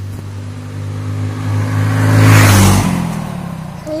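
A motor vehicle driving past close by on the road: its engine hum and tyre noise build to a peak a little over two seconds in, then the pitch drops as it passes and the sound fades away.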